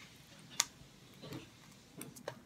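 A single sharp plastic click about half a second in, then a fainter, softer sound about a second later, as the latched door of a clear plastic waterproof action-camera case is worked open against its tight suction seal.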